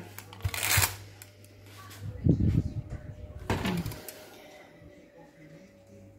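Handling sounds as a freshly baked cake in its baking-paper-lined tin is moved on a kitchen counter: a short rustle, a low bump about two seconds in, and another rustle, over a steady low hum.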